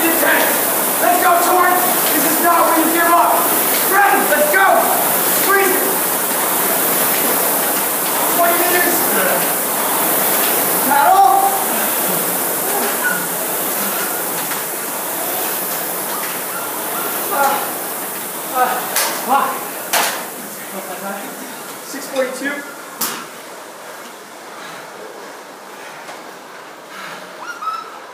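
Indistinct overlapping voices over a steady whirring hiss from air-resistance rowing machine flywheels. The voices die away after about twelve seconds, and a few sharp knocks and clatters follow as the whirr fades.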